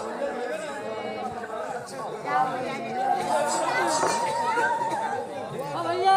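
Many voices talking at once, a mixed chatter of a gathered crowd with no single voice leading.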